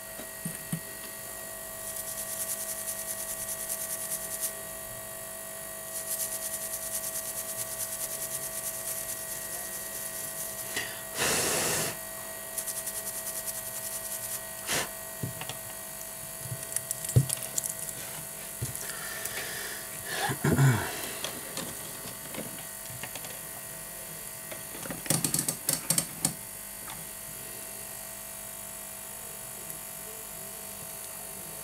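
Light, rapid scratching in stretches as the water-damaged Samsung Galaxy S6 Edge battery's connector is scrubbed clean, over a steady electrical hum. There is a short hiss about eleven seconds in and a quick run of clicks about twenty-five seconds in.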